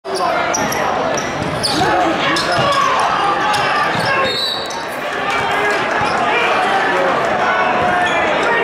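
Basketball bouncing on a hardwood court amid the steady chatter of a crowd of spectators in a large gymnasium.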